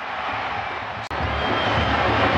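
Stadium crowd noise swelling just after a penalty is scored, broken by a sharp click about a second in, then a steady crowd din with a low rumble.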